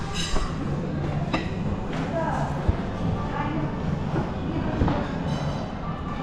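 Indistinct voices and background music in a dining hall, with a steady low room hum and a few sharp clicks scattered through.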